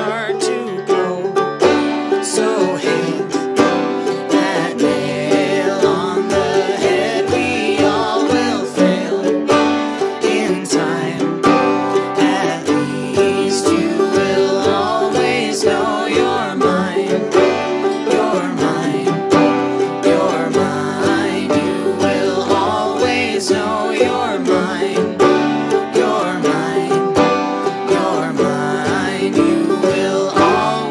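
Instrumental band music with no singing: a banjo picking, backed by bowed cello and ukulele.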